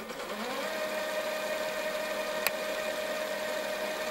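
A steady electronic drone under a chapter title card. It rises in pitch over the first half second, then holds one tone, with a single click about two and a half seconds in.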